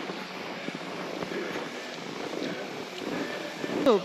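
Steady, low outdoor background noise with a faint murmur of distant voices.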